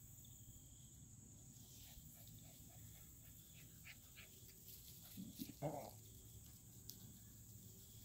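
An American Bully puppy gives one short yip a bit past halfway, over a faint steady insect trill.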